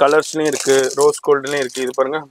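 A man talking continuously, with a light rattling of plastic-wrapped earring cards being handled.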